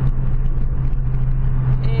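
Steady engine drone and road noise inside a small car's cabin while it drives along a highway.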